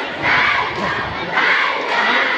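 A large group of students shouting a bench cheer together in the stands, in two loud shouts about a second apart.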